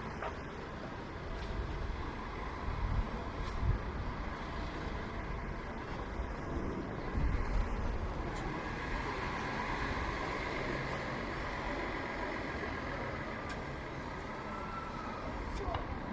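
City street ambience: road traffic passing with passers-by talking. A low rumble swells twice, about three and seven seconds in.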